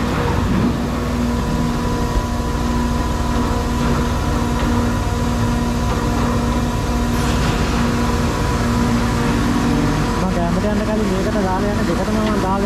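Plastic injection moulding machinery running with a steady hum and several constant tones. A voice comes in near the end.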